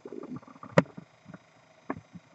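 Handling noise: a few light knocks and clicks, the sharpest about a second in and another near the end, with a faint low murmur at the start. The nail drill is not running.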